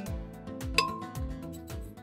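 Background music with a steady beat; a little under a second in, a single glass clink with a short ring, as a small glass knocks against a glass blender jug.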